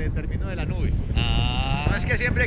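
Wind rushing over the microphone in flight, with a man's voice. Just past the middle comes one flat, drawn-out vocal sound held for under a second, like a hesitant "eeeh".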